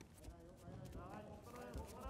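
Men's voices calling out short shouts that rise and fall in pitch, growing stronger near the end, over the soft patter of bare feet stepping on the tatami mat.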